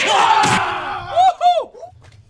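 Men shouting fight cries: a long loud yell, then two or three short, sharp cries that each rise and fall in pitch about a second in.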